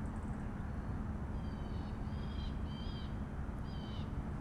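Several short bird calls, each a brief chirp, start about a second and a half in over a steady low background rumble.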